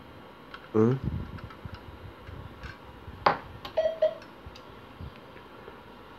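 Light clicks and taps of metal and plastic parts as hands fit a protective piece onto a semi-automatic telegraph key (bug), with one sharper click about three seconds in.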